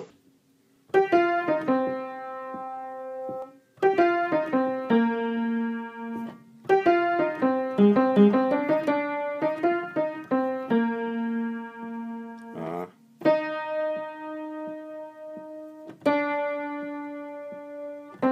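Piano playing a slow passage of notes and chords, each struck and left to ring, in phrases separated by short breaks.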